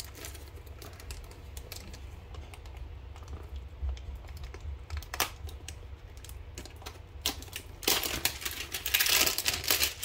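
Trading cards and cardboard hanger-box packaging being handled, giving scattered light clicks and then a dense clatter and rustle in the last two seconds. A steady low hum runs underneath.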